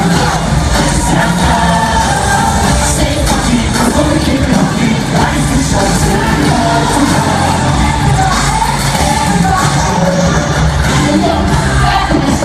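Loud live concert music with vocals, played over a stadium sound system and recorded from among the audience, with crowd noise mixed in.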